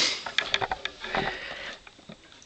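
A sniff through a running nose, then a quick run of light clicks and taps as small plastic Transformers figures are handled and set down on a wooden table.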